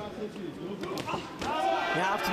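Boxing gloves landing punches: a few sharp thuds about a second in.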